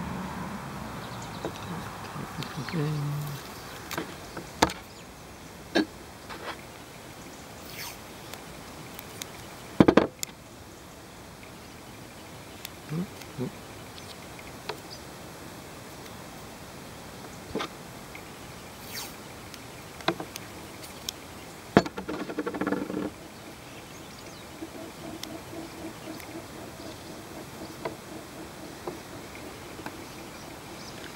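Hands working a braided polyester rope splice on a metal table: scattered light clicks and taps as the strands and tools are handled, the loudest about ten seconds in and again near twenty-two seconds.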